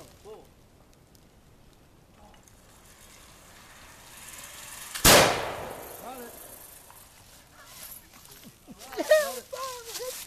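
A single black-powder flintlock muzzleloader shot about five seconds in: one sharp, loud report with a short echoing tail.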